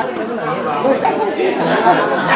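Indistinct chatter: people talking in the background, with no words that stand out.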